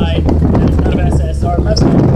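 Mazda MX-5's four-cylinder engine running at low speed on light throttle, a steady low drone easing down in pitch as the revs fall, with wind rushing across the microphone of the open cabin.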